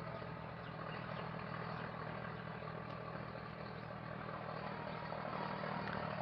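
Steady low hum with a faint hiss: background room noise with no distinct events.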